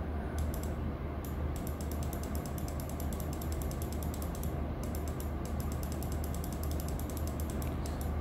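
Computer mouse scroll wheel ticking in quick runs of clicks, with short pauses between the runs, over a steady low hum.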